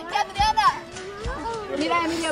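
Several children's and adults' voices talking and calling out over one another during an outdoor group game, with two short low thumps about a second apart.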